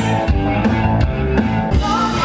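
Live blues band playing, with electric guitar and drum kit.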